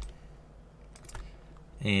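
Low room tone with a couple of faint computer-keyboard key clicks about a second in.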